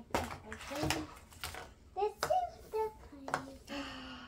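A plastic mystery-ball capsule being pried apart by hand: a series of sharp plastic clicks and knocks as the halves work loose, with quiet voices between them.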